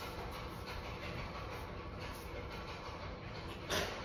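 Steady low room hum with no speech, and a short noisy rasp about three-quarters of a second before the end.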